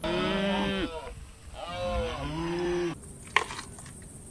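Cows mooing: two long moos, the second starting about a second and a half in. A sharp click follows near the end.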